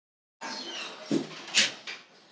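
Silence, then a lecture-room microphone cuts in suddenly, picking up room noise. A short low knock comes about a second in, and a brief high hiss follows about half a second later.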